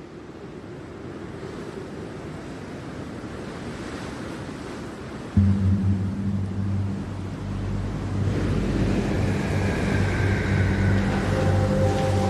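Rushing sea-wave noise that gradually swells. About five seconds in, a deep sustained musical drone enters suddenly and loudly, and higher held tones join it later.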